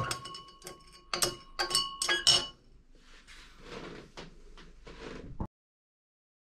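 Zinc granules clinking against the wall of a glass beaker as the solution is stirred on a magnetic hotplate stirrer: a quick, irregular run of sharp clinks, then a softer hiss for a couple of seconds. The sound cuts off suddenly about five and a half seconds in.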